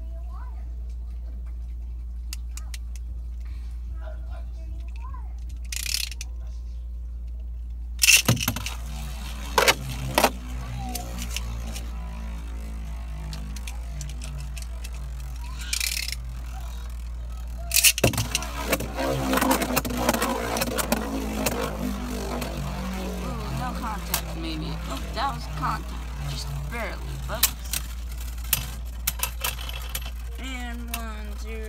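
Beyblade spinning tops launched into a plastic stadium, one about a quarter of the way in and a second about halfway. Each launch is followed by the tops whirring as they spin, then rapid clicks as the two knock against each other and the stadium walls.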